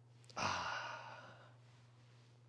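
A man's long breathy exhale, a sigh, starting about half a second in and fading away over about a second, as he sips and smells a glass of red wine.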